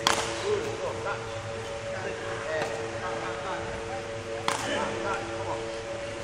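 Two sharp cracks of a badminton racket striking a shuttlecock, one right at the start and one about four and a half seconds later, over a steady low hum.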